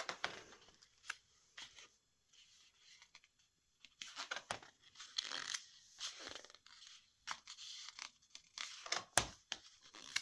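Pages of a large hardback photo book being turned and smoothed flat by hand: a few soft paper rustles, then a quiet second or two, then a busier run of paper swishes and rustles through the second half.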